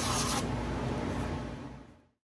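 A small epoxy-resin segment rubbed by hand on a disc of 120-grit sandpaper: a steady scratchy sanding that fades away near the end.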